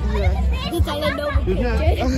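Several people's voices, children's among them, talking and calling out close by, over a steady low rumble.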